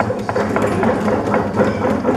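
Audience applauding: many hands clapping in a dense, irregular patter that sets in suddenly just before and keeps going.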